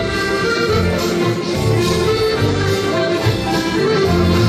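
Live musette dance music: a Maugein button accordion playing the melody in sustained notes over a pulsing bass line.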